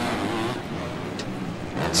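250-class motocross bikes racing on track, their engines revving and their pitch rising and falling as the riders work the throttle through the course.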